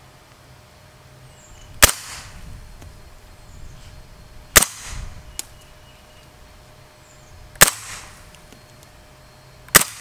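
Integrally suppressed MP5SD submachine gun firing 124-grain 9mm rounds as single shots, four shots a few seconds apart, each a sharp report with a short echo. For a suppressed gun it is a lot louder than expected.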